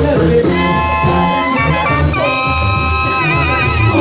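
Live band with harp, clarinets, brass and drum kit playing: long held notes from about half a second in, moving to a higher chord about halfway through, the top note wavering near the end over a steady beat.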